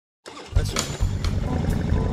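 Dead silence, then about a quarter second in a motorcycle engine sound starts up loud and keeps running.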